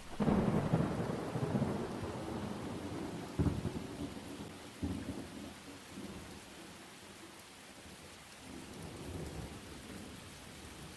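A thunderclap that breaks right at the start and rolls on in a long low rumble, with two more rumbles about three and a half and five seconds in, over steady rain.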